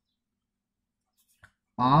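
Near silence, then a single short click about a second and a half in, followed by a man's voice starting just before the end.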